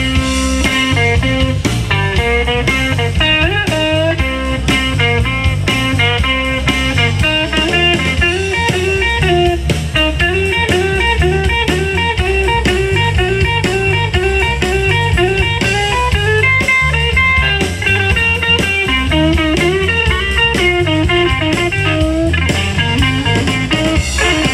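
Live blues band playing: an electric guitar takes the lead with a line of repeated bent notes over bass guitar and a drum kit keeping a steady beat.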